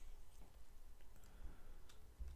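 Faint computer keyboard keystrokes: a handful of separate key clicks at irregular spacing as a word is typed.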